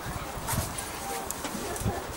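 Distant, indistinct voices of people around an open football pitch, with two short low thuds.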